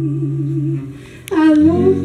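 Live female voice singing a wordless held note with vibrato over sustained acoustic guitar notes. The note and guitar die away under a second in; after a short breath she comes in on a new note that slides down into place as the guitar sounds again.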